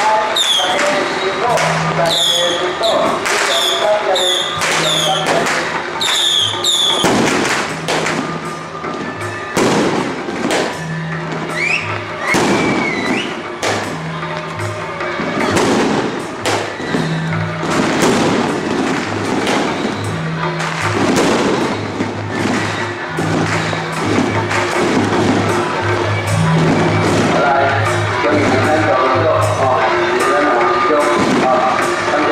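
Strings of firecrackers crackling in dense, rapid, uneven pops, set against music with a steadily repeating low beat.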